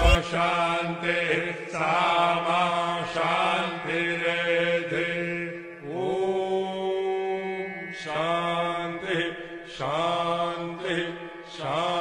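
A voice chanting a Sanskrit mantra in sung phrases of about two seconds each over a steady drone, with one longer held note about halfway through.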